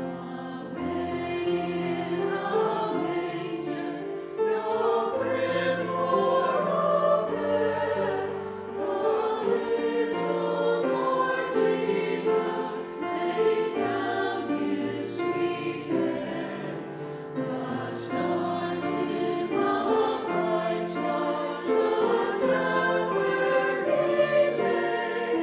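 A small mixed church choir singing a slow Christmas piece with piano accompaniment.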